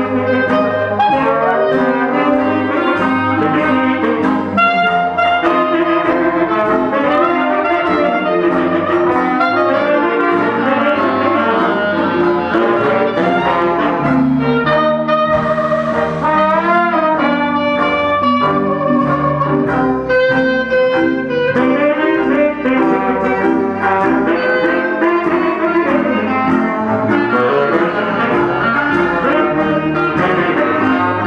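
Traditional New Orleans jazz band playing live, with clarinet, trombone and saxophone over double bass and drums, in continuous ensemble playing. Around the middle there are some gliding notes.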